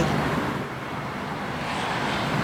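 A vehicle's engine running as it moves slowly, with steady street noise.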